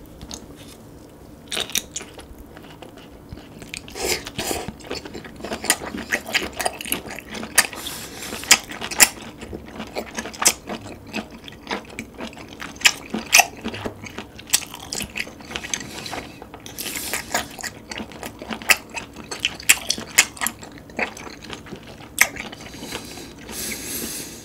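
Close-miked chewing of boiled webfoot octopus: wet, sticky mouth clicks and crackles in a fast, irregular stream that grows busier about four seconds in.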